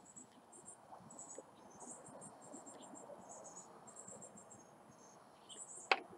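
Crickets chirping faintly, in short high pulsed trills repeated over and over.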